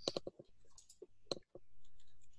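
Sharp clicks of someone working a computer mouse and keyboard: a quick run of clicks at the start and two more about a second in, followed by a faint low hum.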